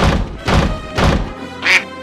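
Title-card sound effects over music: three heavy thuds about half a second apart as words land, then a short duck quack near the end.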